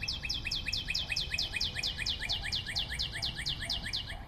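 A fast, even trill of high, bird-like chirps, each falling in pitch, about seven a second, running steadily and stopping just after the end.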